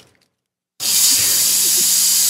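A smoke machine firing a jet of smoke: a loud, steady hiss that starts abruptly a little under a second in, after near silence.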